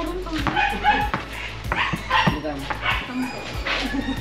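A dog barking and players' voices over background music, with repeated sharp thuds about every half second from a basketball bouncing on the concrete court.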